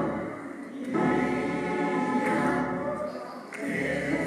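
Gospel choir singing with organ accompaniment, the sound dipping briefly between phrases.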